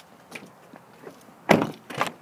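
A single solid thunk from a 2011 Toyota 4Runner's door about one and a half seconds in, after a quiet stretch.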